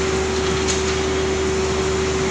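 Palm oil mill machinery running steadily: the cracked-mixture (nut and shell) bucket elevator and its electric drive motor, a continuous mechanical din with a steady hum.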